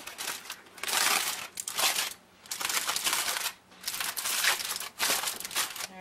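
Aluminum foil wrapping crinkling as it is pulled open by hand, in about four stretches with short pauses between them.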